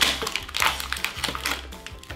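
Clear plastic blister packaging crinkling and crackling in a run of short sharp crackles as fingers work at a bubble to free a small toy figure. Background music with a steady bass plays underneath.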